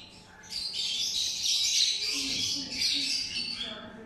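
Several pet lovebirds calling and chattering, shrill and high-pitched, beginning about half a second in and going on almost without a break.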